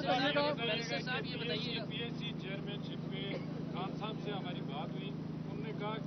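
Several voices talking over one another at a distance from the microphones, with a steady low hum underneath.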